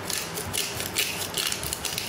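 Hand-twisted pepper mill grinding pepper onto raw chicken, a dry ratcheting crunch in repeated bursts as the mill is turned.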